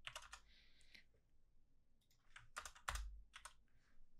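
Faint typing on a computer keyboard: a few keystrokes at the start, a pause, then a quick run of keystrokes in the third second.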